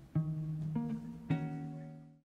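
Three low notes played on a musical instrument one after another, about half a second apart. Each starts sharply and keeps ringing under the next.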